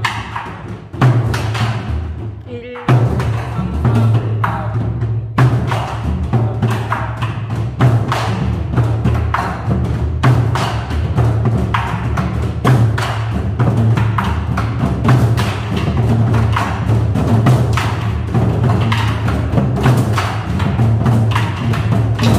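A group of nanta students beating drums with wooden sticks in a fast, dense unison rhythm. Deep drum strokes are mixed with sharp wooden clicks. The playing thins briefly about one to three seconds in, then comes back at full strength.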